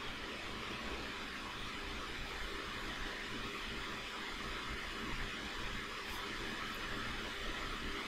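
Steady background hiss with a faint low hum: the recording microphone's room tone, with no distinct event.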